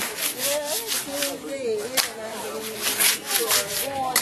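A voice rising and falling in pitch, over repeated short scratchy, rubbing noises.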